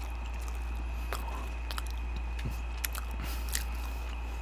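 Close-miked chewing of food: scattered soft, wet mouth clicks and smacks, over a steady low electrical hum.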